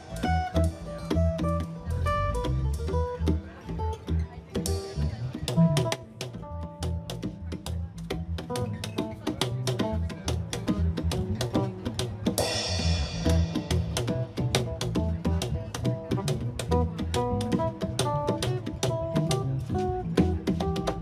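Live band playing an instrumental passage: strummed acoustic guitar, electric bass and congas with a drum kit keeping a steady beat.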